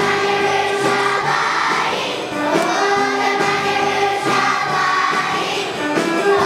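A large choir of young children singing together in unison with instrumental accompaniment, steady throughout.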